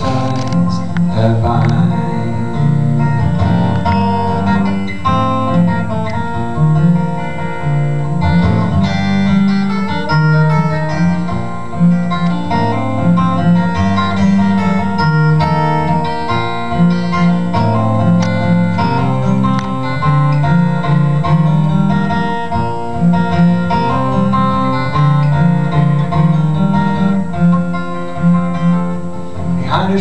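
Solo acoustic guitar playing an instrumental break in a folk song, picked melody notes over a steady bass line, with no singing.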